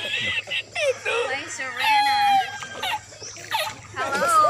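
The 'El Risitas' laughing-man meme audio: a man's high-pitched laughter coming in fits, with one long squealing note about two seconds in.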